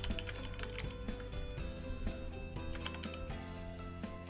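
Computer keyboard typing, a run of irregular light clicks, over quiet background music with long held tones.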